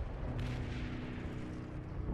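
Battle sound effects of distant artillery: a low continuous rumble with one sharper blast about half a second in, under a held low chord of background music that comes in near the start.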